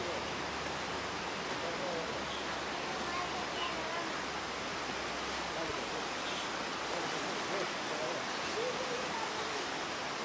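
A river rushing below, a steady, even hiss of flowing water.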